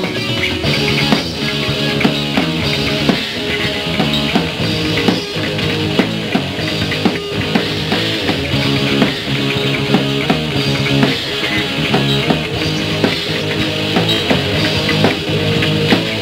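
Rock band playing live: electric guitar chords over a drum kit keeping a steady beat, in an instrumental stretch with no singing.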